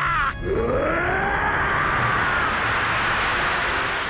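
A man's long drawn-out battle cry in anime voice acting: one sustained yell that rises in pitch, then slowly falls over about three and a half seconds, over a low rumble.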